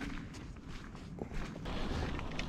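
Footsteps on a dirt trail, an uneven run of short scuffs and crunches.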